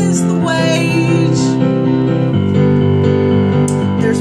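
Piano chords played on a keyboard and held, with a sung phrase ending in the first half-second.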